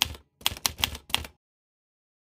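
Typing sound effect: a quick run of about half a dozen key clacks that stops after about a second and a half.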